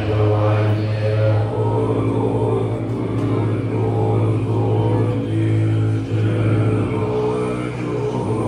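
Tibetan Buddhist monks chanting together in a deep, low drone, long held notes broken by brief pauses for breath.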